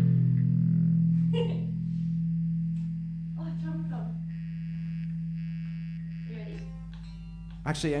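Electric guitar and bass letting the final chord ring out through their amps after the song's last hit: a low held note slowly fading, with a few faint voices, and a man's voice right at the end.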